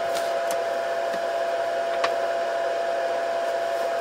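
Steady whir of a running fan with a constant hum tone, from the Scotle HR6000 rework station switched on and heating. A few light ticks sound over it near the start and about two seconds in.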